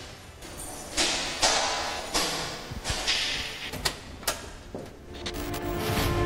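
A key turned twice in the lock of a steel apartment door one floor up, heard from below: several short noisy bursts, then two sharp clicks of the lock. Music comes in near the end.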